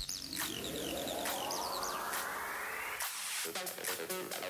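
Coltri compressor oil poured from a bottle into the compressor's oil filler tube, the pour rising steadily in pitch as the tube fills and stopping suddenly about three seconds in. Background music plays under it.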